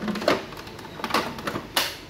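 Hard plastic clicks and knocks as the water tank of a Sharp humidifying air purifier is handled and set back into the machine: a few sharp clacks, the loudest near the end.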